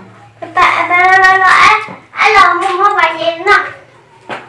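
A woman's high-pitched voice in two long, drawn-out phrases, with a short break between them.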